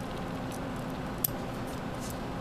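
One short, sharp snip about halfway through, with a few fainter clicks, over a steady low hum: small scissors cutting the beading thread.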